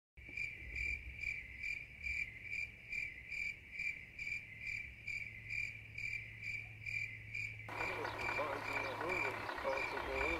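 Crickets chirping in an even rhythm, about two high chirps a second. About eight seconds in, a fuller background of other outdoor sound joins them.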